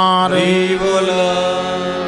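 Male devotional chanting: a sung refrain ends just after the start, then a single long note is held.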